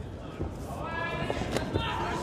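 A man's voice calling out, starting about half a second in, over scattered sharp thuds during a cage fight.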